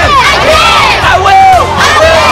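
A group of children shouting and cheering together, many voices at once.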